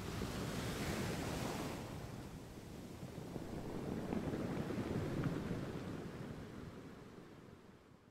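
Ocean surf washing onto a beach, swelling twice and fading out near the end.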